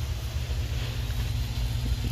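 Steady low background rumble, with a faint hum in the second half.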